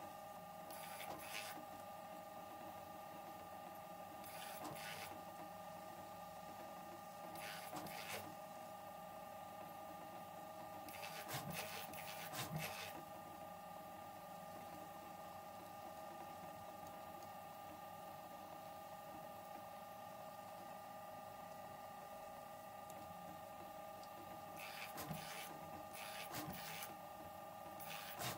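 Prusa MK4 3D printer fitted with a homemade screw-type pellet extruder, printing the first layer of a part: a steady motor whine, with brief louder rasps several times.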